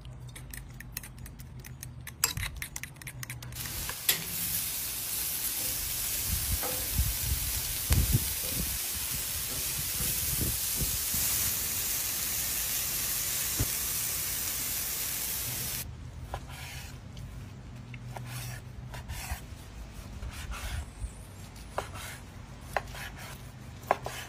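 Shrimp sizzling on a flat-top griddle: a steady hiss that starts about four seconds in and cuts off suddenly about twelve seconds later. Before and after it, light scattered clicks and taps of kitchen work.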